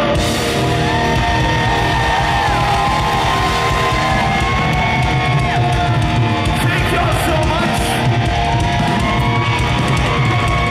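Live rock band playing loudly, with electric guitars, bass and drums, and long held melody notes that bend in pitch.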